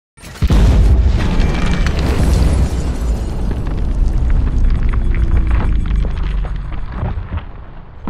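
A deep boom that starts suddenly and rumbles on, slowly fading over about eight seconds: a 12-gauge shotgun blast slowed down to match a slow-motion replay.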